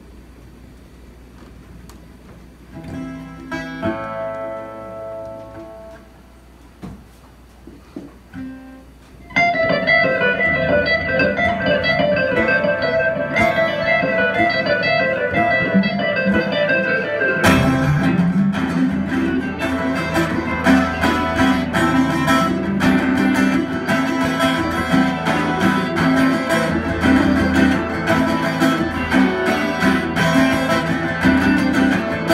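Live instrumental guitar music. A few loose guitar notes come in the first seconds, then a guitar starts a melodic line about nine seconds in, and a second stringed instrument joins with lower notes about eight seconds later.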